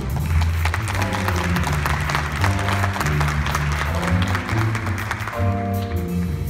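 Audience applauding over a jazz big band's rhythm section, with a walking bass line and drums running underneath. Sustained horn chords come back in near the end.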